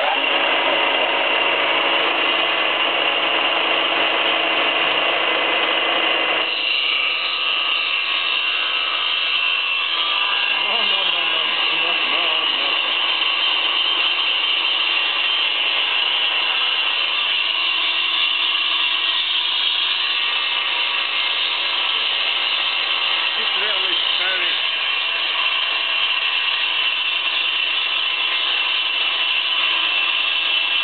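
Milling machine spinning a 300 mm woodworking circular saw blade on its spindle while cutting gaps into a plastic block: a loud, steady high whine carrying several steady tones. The lower part of the sound thins out about six and a half seconds in.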